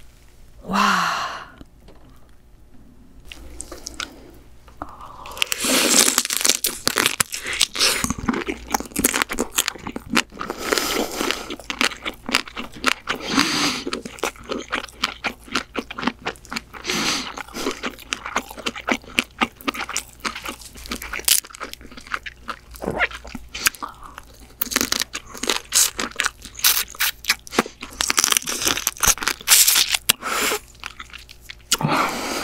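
Close-miked crunching and chewing of steamed female blue crab: shell and legs cracked and bitten, with wet chewing. The crunches come thick and fast from about five seconds in.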